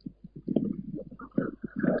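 A person's low, murmured voice in short, broken sounds, without clear words.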